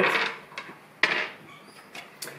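Small wooden game cubes clattering and rolling on a wooden table, with a sharp clatter about a second in that dies away quickly.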